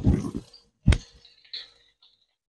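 Slotted spatula scraping sliced shallots and garlic around a non-stick pan, followed by one sharp knock against the pan about a second in.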